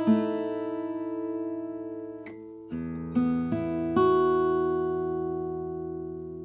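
Samick GD-101 steel-string acoustic guitar played with a pick. A chord rings and dies away, then a low bass note and two plucked notes lead into a last chord about four seconds in, which is left to ring and fade.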